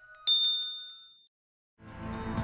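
A single bright ding from a subscribe-button and notification-bell animation. It strikes about a quarter second in and fades out over about a second. Music starts near the end.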